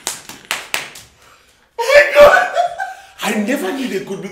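Hands clapping several times in quick succession during the first second, with laughter. After a short pause come loud wordless vocal outbursts.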